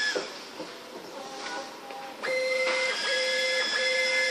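Rotary UV LED inkjet bottle printer: a steady high whine cuts off right at the start, the machine goes quieter for about two seconds, then its drives start up again in a whine that switches on and off in repeated pulses, each under a second long, as the print pass runs.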